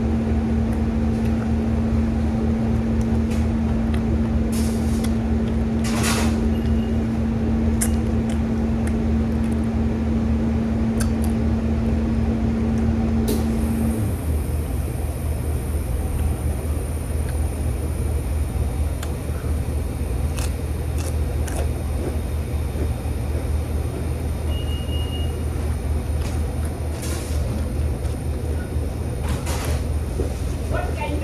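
Steady low machine hum of room equipment, with a steady mid-pitched drone that cuts off suddenly about halfway through, a faint high whine from then on, and a few sharp crunches of potato chips being eaten.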